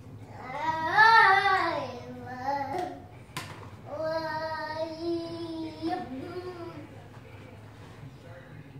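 A toddler singing: a loud phrase that swells up and falls away about a second in, then a steadier held phrase from about four to six seconds. A short sharp click falls between the two phrases.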